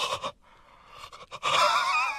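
A cartoon character's voice gasping and straining: short breathy sounds at the start, then a louder strained sound with a wavering pitch from about one and a half seconds in.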